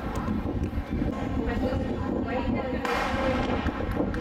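Open-air stadium ambience with wind rumbling on the microphone and faint distant voices, broken about three seconds in by a single sharp crack: a starter's pistol setting off a 50 m sprint heat.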